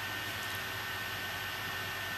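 MacBook cooling fans running at high speed, about 5,700 rpm, forced up by fan-control software: a steady rushing air noise with a faint constant high whine.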